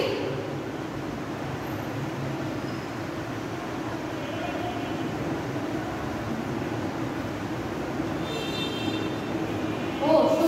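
Steady low background rumble, with faint short squeaks of a marker pen writing on a whiteboard about four seconds in and again near the end.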